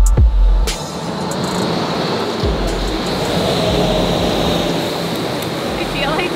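Background music with heavy bass hits in the first second, followed by a steady rushing noise with a low hum underneath.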